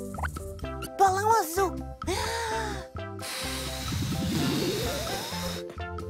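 Cartoon balloon-inflating sound effect: a hiss of rushing air with a pitch that rises steadily for about two seconds, over bouncy children's music. Short babbling character voices come just before it.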